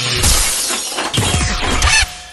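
Outro music with a glass-shattering sound effect, a dense crash that thins out with falling streaks and cuts off sharply at the end.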